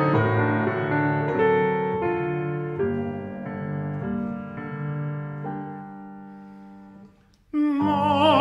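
Solo piano playing a song introduction, its notes ringing and dying away almost to silence. Near the end an operatic voice comes in loudly with a wide vibrato.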